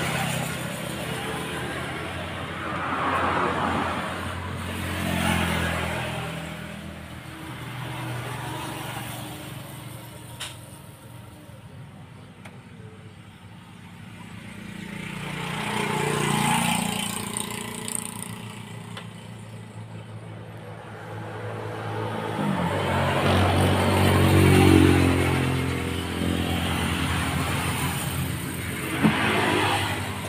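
Motor vehicle engines running, their sound swelling and fading several times, with one sharp click about ten seconds in.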